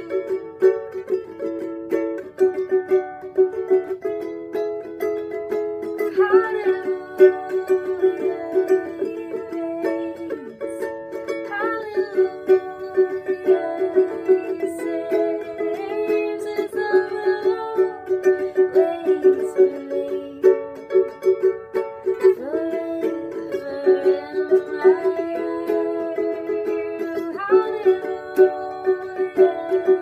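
Ukulele strummed in a steady rhythm, with a woman singing sliding, drawn-out notes over it at intervals.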